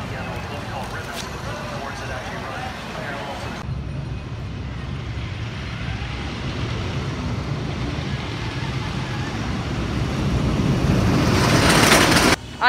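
Wooden roller coaster train rumbling along its track, growing louder over the last few seconds as it comes near. Faint voices can be heard in the first few seconds.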